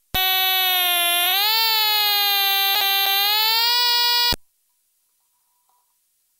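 Reproduction Stylophone playing one long held note, recorded straight from its headphone output into a computer's line-in. The pitch bends up about a second and a half in, sags a little, then rises again, and the note cuts off suddenly after about four seconds.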